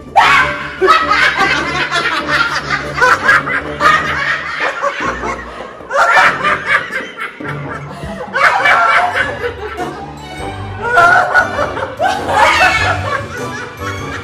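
Two women laughing hard in repeated loud bursts, over background music.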